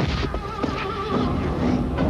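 Film soundtrack music with a high, wavering cry that warbles for about a second near the start.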